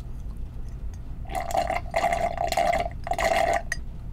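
Drink sucked up through a straw from a glass jar: three slurping pulls in a row, starting about a second in.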